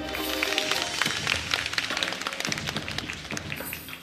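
Dance music with sustained notes that fade out just after the start, while an audience applauds with dense, irregular clapping that thins out near the end.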